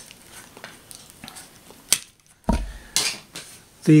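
Hard plastic windmill parts clicking and clattering as they are handled and fitted onto the spindle, with a sharp click about two seconds in, then a low thump of handling noise.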